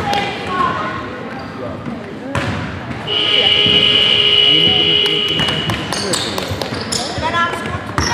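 A single long, steady high-pitched signal tone, held for about two and a half seconds from about three seconds in, sounding in a basketball hall at a stoppage in play. Basketball bounces and voices sound around it.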